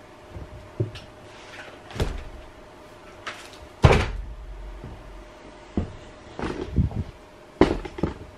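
A long aluminium-extrusion CNC linear axis being handled and turned over onto its side, knocking and thumping against the table in a series of irregular impacts, the heaviest about four seconds in.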